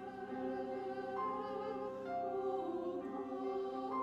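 Church choir singing in long held chords, the notes changing in steps every second or so.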